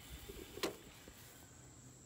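Quiet background with a faint, steady high-pitched insect drone, likely crickets, and a single short click about two-thirds of a second in.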